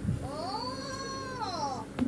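A single long, high-pitched, meow-like call that rises and then falls in pitch, lasting most of two seconds.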